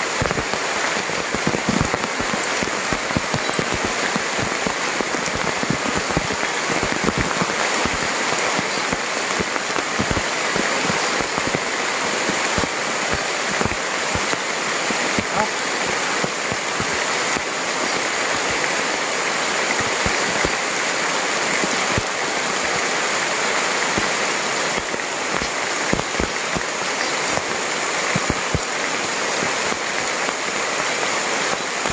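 Steady rain falling on forest leaves and ground, an even hiss with many individual drops tapping close by.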